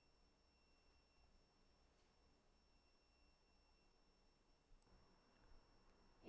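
Near silence: faint recording background with a faint steady high tone, and a couple of faint clicks about five seconds in.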